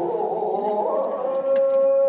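A kagura performer's chanting voice, wavering at first and then held on one long, steady high note.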